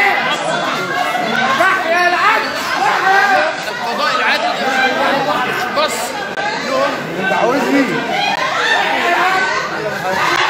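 A crowd of men and women all talking and shouting over one another, with high raised voices and crying among them.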